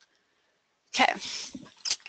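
Near silence, then about a second in a woman's voice says "okay", with a breathy start.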